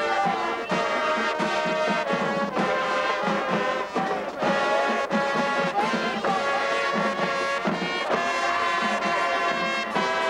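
High school marching band playing: a brass section of trumpets and trombones sounding sustained chords, over a steady beat from snare, tenor and bass drums.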